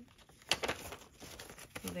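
Paper banknotes rustling and a clear plastic cash envelope crinkling as a stack of bills is pulled out of it and handled, with a sharp crackle about half a second in.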